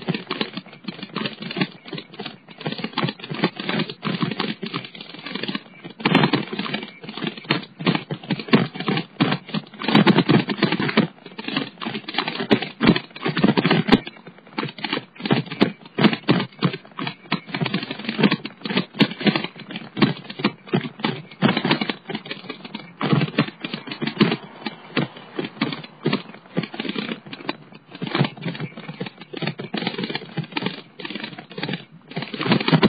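Dense, irregular rattling and clicking of a bicycle being ridden along a street, with the camera jostled by the ride. It comes in louder clusters about a third of the way in and again near the middle.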